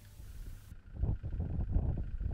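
Wind buffeting the microphone on an open hill: a low, uneven rumble that grows louder about a second in.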